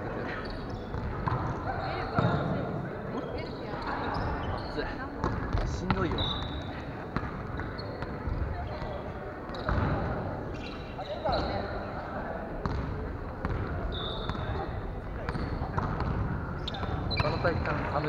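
Volleyballs being struck and bouncing during indoor play, a sharp hit every few seconds, with short high shoe squeaks on the wooden gym floor and players' voices carrying in the large hall.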